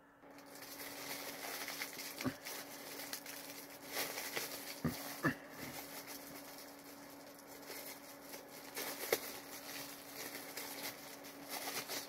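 Faint handling noises: light rustling and a few soft knocks as a cookie and its tray are handled, over a steady low hum.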